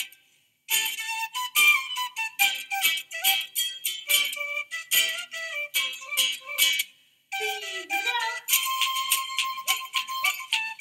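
Recorded Andean carnavalito dance music: a high flute melody over a rhythmic beat, with two short breaks, one right at the start and one about seven seconds in.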